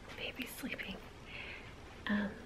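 Faint whispered speech: short, soft voice sounds with no clear words.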